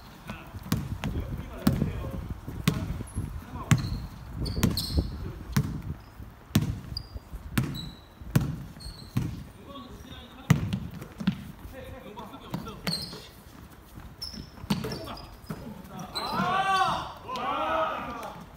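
Basketball bouncing on a hardwood gym floor during a game, a string of sharp irregular thuds, with short high squeaks of sneakers on the floor. Voices call out across the court, loudest in the last two seconds.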